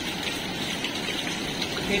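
Natural mineral spring water falling from a rock ceiling in a steady shower of drips and trickles that splash like rain.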